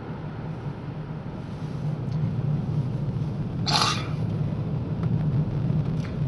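Steady low drone of a car's engine and tyres heard from inside the cabin while driving. About two-thirds of the way through there is one brief hiss.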